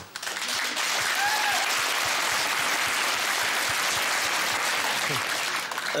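Studio audience applauding steadily, dying away just before the end.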